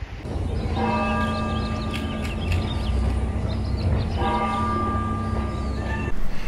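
A church bell tolling: two strikes about three and a half seconds apart, each ringing out and slowly fading, its deep hum carrying on between them, over a low rumble.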